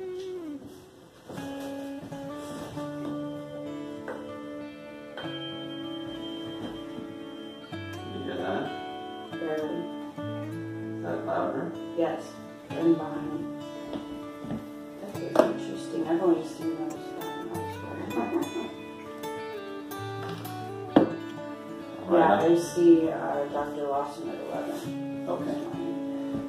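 Background music with guitar and changing bass notes.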